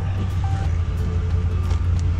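Ram pickup truck's engine idling from a cold start, left to warm up: a steady low rumble heard from inside the cab.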